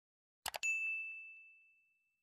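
Two quick mouse-click sound effects about half a second in, followed at once by a single high bell ding that rings on and fades over about a second and a half. This is the notification-bell sound of a YouTube subscribe-button animation.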